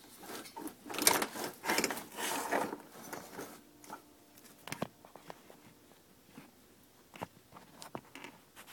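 Hands handling a plastic PCM wiring-harness connector and its taped wire bundle. It rustles and scrapes for the first few seconds, then gives a few light clicks and taps.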